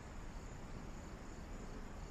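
Faint, steady chirping of crickets in quiet night ambience.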